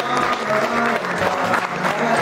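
Wedding guests applauding steadily, with music playing underneath.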